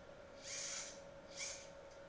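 Two soft breaths through the nose, a longer one about half a second in and a short one past the middle, over a faint steady hum.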